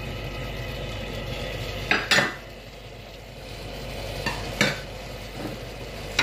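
A wooden spatula stirring diced potatoes in a pan over a low sizzle, with sharp knocks against the pan about two seconds in and again about four and a half seconds in.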